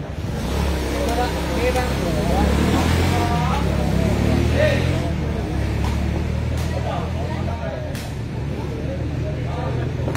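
Spectators' voices, chatter and calls, during a sepak takraw rally, over a steady low rumble, with a sharp knock or two from the ball being kicked.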